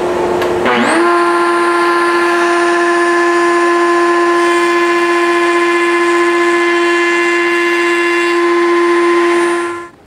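Router mounted in a router table, fitted with a dovetail bit, spinning up with a rising whine about a second in and then running at a steady high pitch, with the dust-extraction vacuum hissing alongside. Both cut off shortly before the end.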